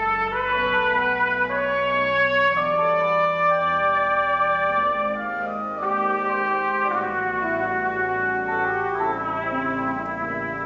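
Trumpet and organ playing together: the trumpet holds a melody of sustained notes that change about every second, over organ chords and low pedal notes.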